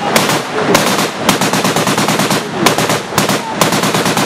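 Automatic gunfire: repeated short bursts of rapid shots about a second apart, with single shots between.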